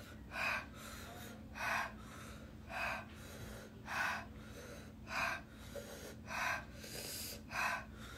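A woman breathing hard through her open mouth in a steady rhythm: seven sharp breaths, each a little over a second apart, to cope with the burn of an extremely hot chip.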